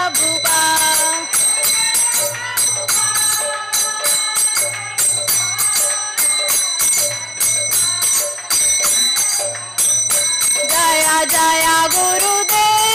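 Small brass hand cymbals (kartals) struck in a quick, steady rhythm, their metal ringing on between strikes, under a woman's singing of a devotional chant.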